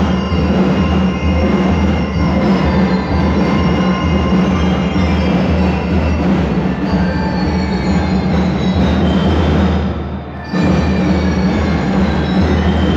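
A drum and lyre corps playing: bell lyres ring a melody over marching drums. The music breaks off for a moment about ten seconds in, then comes back in full.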